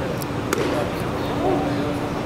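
Spectators talking in a ballpark's stands, with one sharp crack of a baseball impact about half a second in and a steady hum underneath.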